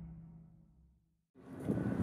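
The tail of a dramatic logo sting fading out over a low steady drone, then a brief silence. About a second and a half in, outdoor street noise with wind on the microphone cuts in.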